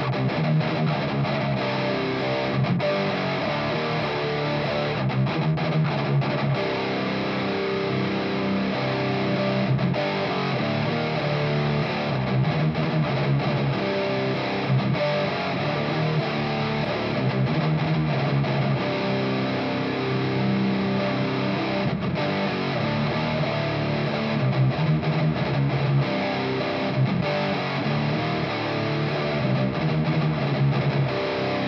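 Electric guitar played through a Haunted Labs Old Ruin distortion pedal, riffing continuously with a heavy, distorted 90s death/doom metal tone, the pedal's gain set somewhere around the middle of its range.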